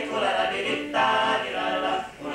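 Male vocal quartet singing held chords in close harmony, moving to a new chord about a second in.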